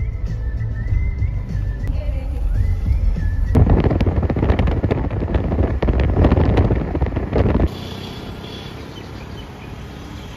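Low road rumble inside a moving car with faint background music. About three and a half seconds in, a loud crackling rush of wind through an open side window at highway speed takes over for about four seconds, then cuts off suddenly to quieter street traffic ambience.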